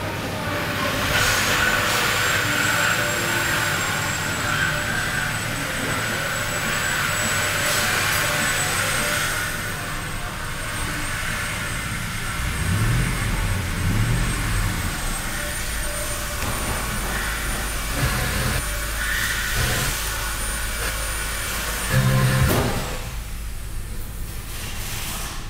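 Ford 4.6-litre V8 of a 1997 F-150 idling, revved briefly twice about 13 seconds in, with a short louder burst near the end.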